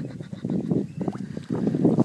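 Excited laughter and whooping from several people, with some water splashing around a large peacock bass being held up in the river.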